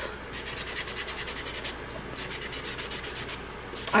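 Foam nail buffer block rubbed quickly back and forth across gel-covered artificial nail tips, a scratchy rhythm of several strokes a second, buffing the surface shine off. The strokes pause briefly about halfway through and again near the end.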